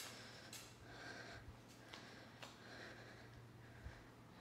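Near silence, with faint breathing and soft taps of bare feet on a wooden floor from a woman doing reverse lunges.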